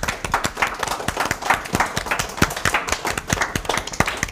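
A small group of people applauding: many quick, overlapping hand claps.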